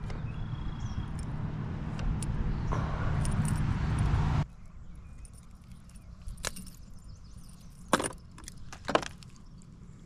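Spinning reel being cranked to bring in a fish, a steady low whirring that stops abruptly about four and a half seconds in. Then a few sharp clicks and rattles from the metal spinner lure and hooks as the fish is handled.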